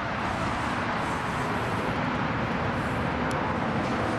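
2014 Yamaha YZF-R1's 1000cc crossplane-crank inline-four idling steadily through aftermarket Toce slip-on exhausts.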